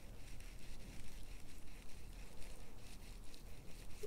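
Faint rubbing of mineral sunscreen lotion into the skin of the back of a hand, fingers working it in with a scatter of small soft ticks and squishes.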